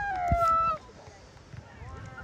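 A loud, high-pitched shout held on one long call that slides down in pitch and cuts off just under a second in, followed by faint distant voices.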